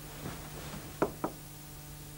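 Faint rustling of bedclothes, then two sharp knocks about a second in, a quarter of a second apart.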